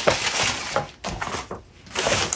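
Paper rustling and sliding as envelopes and sheets are handled on a table, with a few light knocks.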